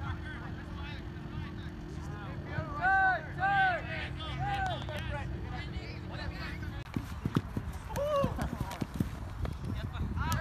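Soccer players shouting short calls to each other during play, the two loudest about three seconds in, with more calls later. Scattered sharp knocks and thuds from the ball and running feet follow in the second half, and a steady low hum stops about seven seconds in.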